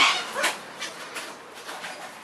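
Long-billed corella's harsh call tailing off at the start, then a short rising squawk about half a second in, followed by faint rustles and ticks.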